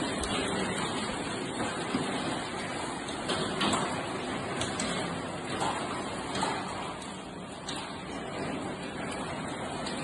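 Heavy rain pouring down in a storm: a steady rushing noise with faint scattered taps.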